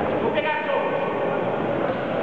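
People's voices calling out during a boxing bout, heard in a large sports hall over steady background hall noise.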